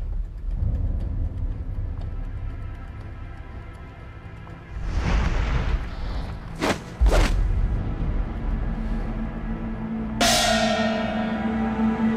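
Tense dramatic film score: a low rumbling drone, a swelling whoosh about five seconds in, two sharp hits close together just after, then a sudden crash near the end that rings on in a held chord.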